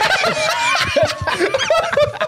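Several men laughing together, snickering and chuckling.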